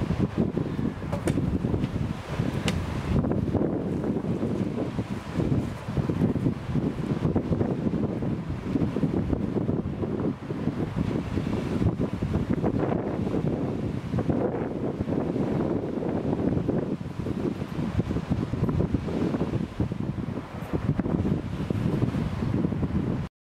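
Wind buffeting the microphone in gusts: a low rumbling noise that swells and dips throughout. A couple of faint clicks come in the first three seconds.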